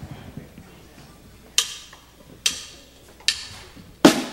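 Drumsticks clicked together in a count-in: three sharp clicks a little under a second apart in the second half, over faint stage rumble, just before the band starts the song.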